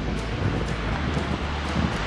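Wind blowing across the microphone: a steady low rumble with a hiss above it.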